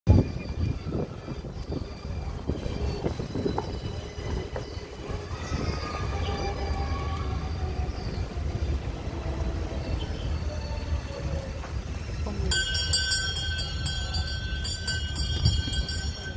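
Open-sided sightseeing cart running along: a steady low rumble and rattle of the ride. Near the end a steady high tone with several overtones starts and holds.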